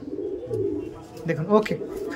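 Domestic pigeons cooing, a soft low sound through the first second or so, followed by a man briefly saying "okay" near the end.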